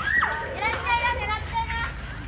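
Children's high-pitched voices calling out and shrieking while they play, a quick rising-and-falling cry at the start and several more short calls after it.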